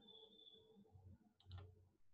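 Near silence with a faint high tone in the first second, then a quick double click of a computer mouse about one and a half seconds in.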